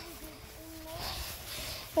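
Footsteps swishing through tall grass, with a faint distant voice.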